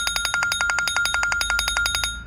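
Smartphone ringtone for an incoming call: an electronic ring with a rapid, even trill over a steady high tone, cutting off after about two seconds.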